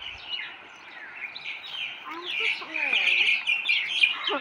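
Many small birds chirping at once, a dense chorus of short high overlapping chirps that thins briefly about a second in and grows busier in the second half.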